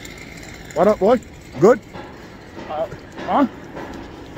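A man's voice calling out short exclamations of "What?", about five of them, each rising then falling in pitch, over a steady background of street noise.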